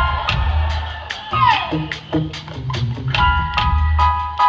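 Live band playing in a large hall, with drum kit hits and a steady bass line; from about three seconds in, held keyboard chords join. A singer's shouted "yeah" comes over the music about a second and a half in.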